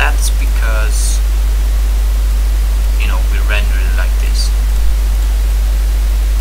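A loud, steady low electrical hum with hiss under it, the noise floor of a home microphone recording. There are a few brief, faint voice sounds just after the start and again about three seconds in.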